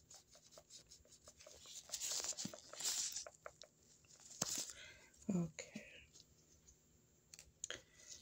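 Toothbrush bristles scrubbing close to the microphone in scratchy brushing strokes, loudest about two to three seconds in and again a little before five seconds, with small clicks between them. A brief voice sound comes a little after five seconds.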